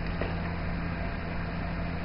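Steady background hiss with a low electrical hum, with a faint click shortly after the start.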